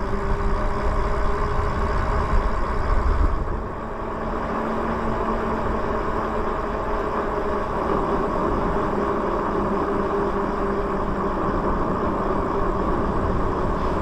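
Riding noise from a Lyric Graffiti electric bike rolling along at speed: steady tyre-on-asphalt noise with wind on the microphone. The wind rumble is heavy for the first few seconds and eases about three and a half seconds in.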